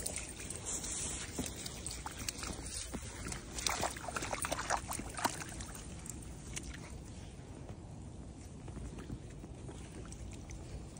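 Dogs wading and splashing through a shallow muddy puddle, water sloshing around their legs, with a run of louder splashes about four to five seconds in.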